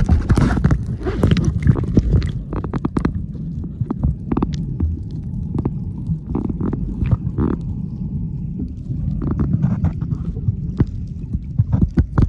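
Underwater sound picked up by a camera submerged while snorkeling: a continuous muffled low rumble of water moving over the camera, with scattered sharp clicks and pops.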